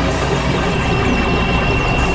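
Dense experimental noise music: several recordings layered into a steady, droning wall of sound, with a steady high tone coming in about half a second in.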